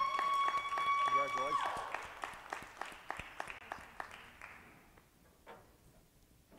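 A few people clapping steadily, the claps fading away after about four seconds. Over the first two seconds a long, steady, high-pitched tone rings out, and a voice briefly shouts about a second in.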